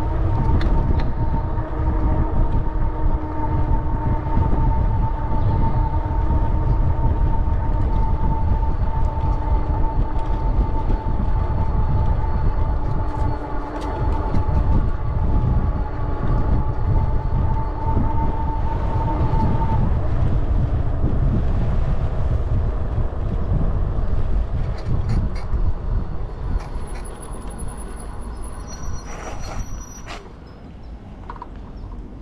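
Wind buffeting the microphone over the rumble of bicycle tyres on a rough paved path, with a steady high whine that stops about two-thirds of the way through. The sound quietens near the end as the bike slows.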